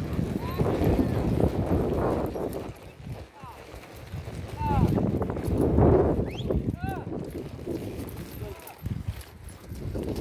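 Horses walking over grass and dirt, their hooves clip-clopping, with wind gusting on the microphone. A few short rising-and-falling tones come about five and seven seconds in.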